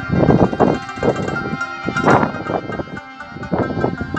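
Live Pashto folk music: a harmonium holds steady chords under a plucked long-necked string instrument, with a beat of drum strokes about twice a second.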